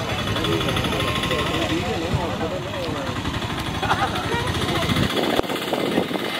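People talking over a low rumble; the rumble drops away about five seconds in.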